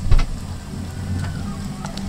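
A steady low rumble with a light hiss over it, broken by a sharp click just after the start and another near the end.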